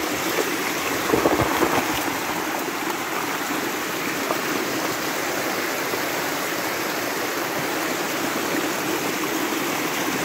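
Spring water gushing strongly out of a rocky bank and rushing over stones: a steady rush of running water, a little louder and rougher about a second in.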